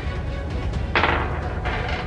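A wooden game die rolled onto a table, landing with one sharp knock about a second in and a fainter one near the end, over background music.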